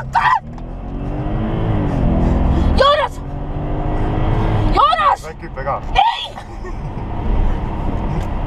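Audi RS6 engine under full-throttle acceleration, heard from inside the cabin: the engine note climbs steadily, drops at an upshift about three seconds in, and climbs again through the next gear.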